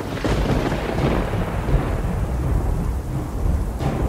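Thunder sound effect: a clap that rolls and fades over a couple of seconds above a steady low rumble, with rain. A sharp crack comes near the end.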